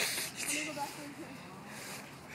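A faint voice, with a short burst of hiss at the start and a fainter hiss near the end.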